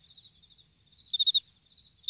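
Crickets chirping: short pulsed chirps about a second apart with a faint trill between, the stock 'crickets' sound effect for an awkward silence.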